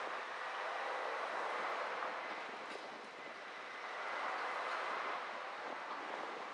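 Steady road and wind noise of a car driving slowly, heard from the car's camera, swelling and easing slightly in level.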